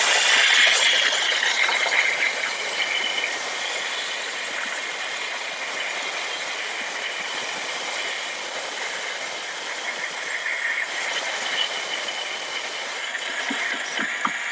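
Steam cleaner's single-hole nozzle blasting a steady jet of steam, hissing, loudest in the first two seconds or so and then a little softer.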